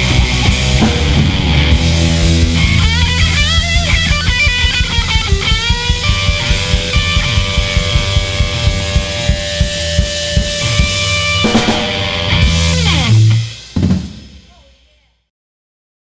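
Rock band playing live on distorted electric guitar, bass and drum kit, with a steady beat, then ending on a final hit about 13 seconds in that rings out and fades to silence.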